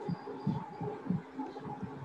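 Several muffled low thuds a few tenths of a second apart, over a steady electrical hum: keystrokes on a computer keyboard picked up through a video-call microphone.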